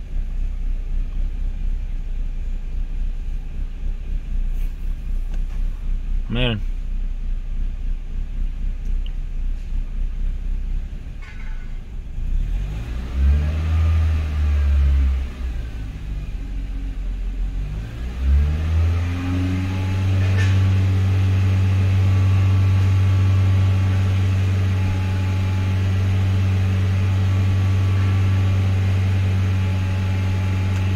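Toyota Corolla 1.8 L four-cylinder (1ZZ-FE) engine idling rough with a low, uneven rumble; it is misfiring on all four cylinders. About 13 seconds in it is revved briefly and drops back, and about 18 seconds in it is revved again and held at a steady higher speed.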